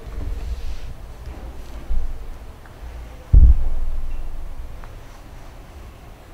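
Low rumbling handling noise on the microphone, with two dull thumps: a short one about two seconds in and a louder one a little later that fades away slowly.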